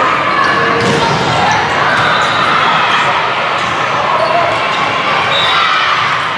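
Indoor volleyball game sounds: ball hits amid a steady mix of players' and spectators' voices, echoing in a large gym.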